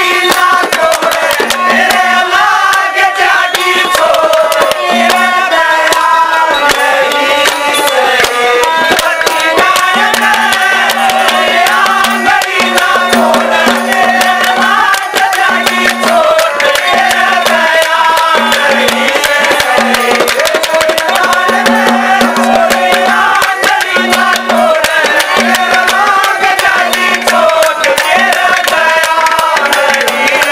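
Live Haryanvi ragni music: a wavering melody line over fast, steady hand-drum beats.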